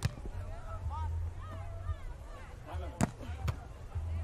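A beach volleyball struck sharply by players' hands during a rally: one hit at the start, then two more about three seconds in, half a second apart. Faint voices run underneath.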